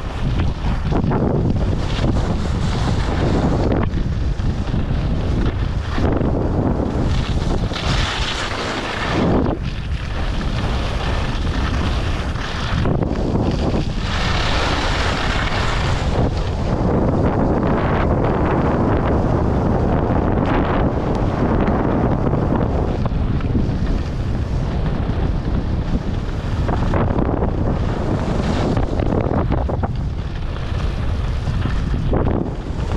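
Wind buffeting the action camera's microphone while skiing down a groomed piste, with the skis hissing and scraping over the snow, swelling in a few surges as the skier turns.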